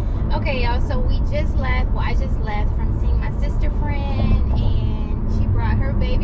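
A woman's voice inside a car cabin, over the steady low rumble of the car driving.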